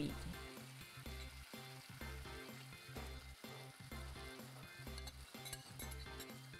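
Marinade sizzling and spitting as it is poured over a pork fillet that has just been browned in a hot casserole. A steady bass beat from background music runs underneath.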